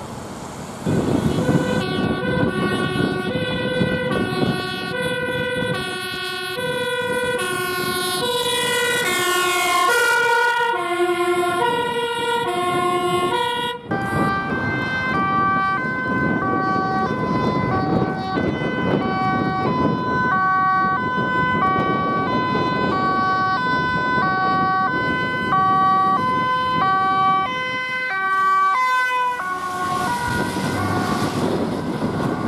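Two-tone (hi-lo) sirens of Dutch emergency vehicles, switching between two pitches about every two-thirds of a second. In the first half two sirens overlap and one drops in pitch as it passes. After a sudden break about 14 seconds in, one higher two-tone siren sounds over engine and tyre noise on the wet road.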